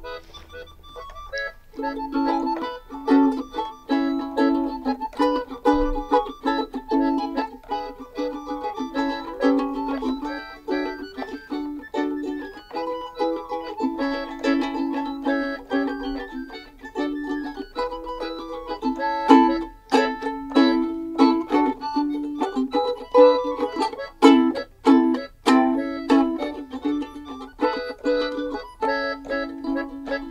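Instrumental duet of a ukulele and an electronic keyboard playing an upbeat tune, with quick plucked ukulele notes over the keyboard's chords. The sound is thin for the first couple of seconds, then both instruments play fully.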